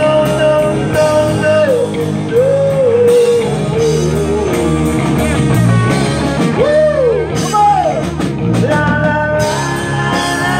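Live rock band playing: electric guitars, bass and drum kit keeping a steady beat, with a singer's voice gliding up and down over them.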